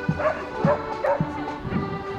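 Marching accordion band playing, sustained accordion chords over regular drum beats. A dog barks three times in the first half.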